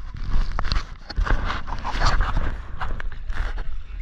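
Wind buffeting an action camera's microphone, with irregular rubbing and knocking as a large trevally and gear are handled in a small outrigger canoe.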